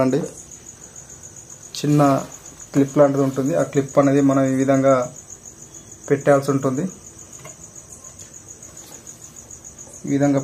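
Crickets chirping, a steady high pulsing trill that runs on unbroken. A person's voice speaks in short stretches about two seconds in, from about three to five seconds, and again around six seconds.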